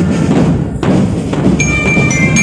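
Military marching drum band playing, with bass drums beating throughout. Ringing bell-lyra notes join in about one and a half seconds in.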